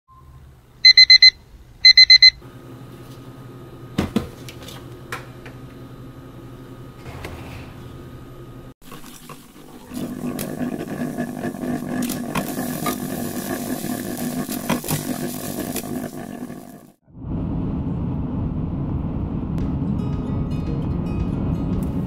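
A digital alarm clock beeping in two quick bursts of rapid beeps near the start, followed by a low steady hum. Then a drip coffee maker brewing with a hiss for several seconds, and finally the low rumble of a car driving, heard from inside the cabin.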